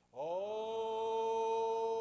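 Congregation singing a hymn a cappella: after a brief breath at the start, a new note slides up into pitch and is held steady.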